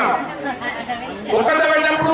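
A man speaking into a handheld microphone, with a short pause about half a second in before he talks on.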